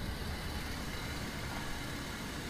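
Car engine idling: a low, steady rumble.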